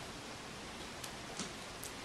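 Steady low hiss of room tone, with three faint short clicks about a second in, a little later, and near the end.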